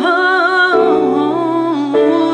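A woman singing long held notes with vibrato over sustained keyboard chords; the melody steps down to a lower note about three-quarters of a second in.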